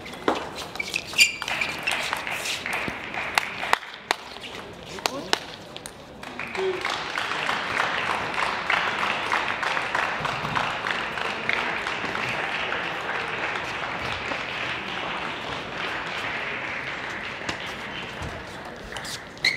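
Table tennis rally: the celluloid ball clicking off rackets and table a handful of times over the first five seconds. Then a spectators' applause lasting about ten seconds as the point ends.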